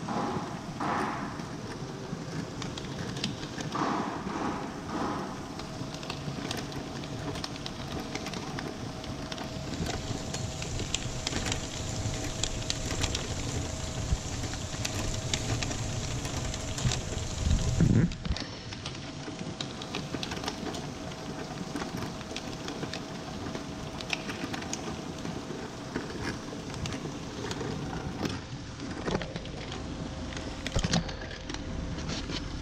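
Thompson friction-type envelope feeder running: a steady motor and belt hum with a rustling, ticking patter of envelopes being pulled through. The hiss grows brighter in the middle and ends with a thump a little past halfway.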